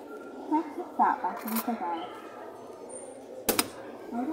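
Faint background voices, with a single sharp click about three and a half seconds in.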